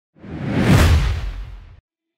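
Logo-reveal whoosh sound effect with a deep rumbling low end: it swells up over about half a second, fades, and cuts off abruptly just before the end.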